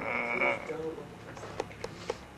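A sleeping man snoring with his mouth open: one loud snore in about the first second, followed by a few faint clicks.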